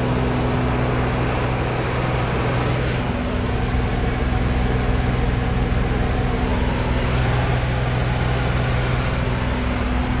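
Steady drone of a light aircraft's engine heard from inside the cabin in flight, a constant low hum over rushing air noise.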